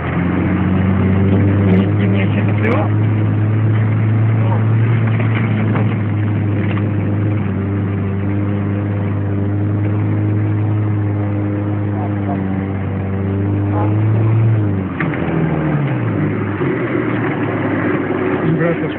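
Mercedes-Benz G-Class (Wolf) engine heard from inside the cabin, pulling at a steady pitch as the vehicle drives a rough dirt track. About 15 s in, the engine note drops as it eases off.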